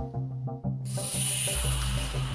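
Quiz-show background music with a hissing swoosh sound effect that starts just under a second in and holds steady.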